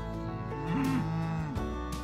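A cow mooing once, a call about a second long that rises and then falls, over background guitar music.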